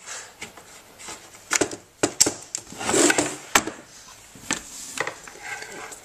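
Handling noise from a metal rack-mount power distribution strip being picked up and moved about on a workbench: scattered knocks and clicks, with a rubbing scrape about three seconds in.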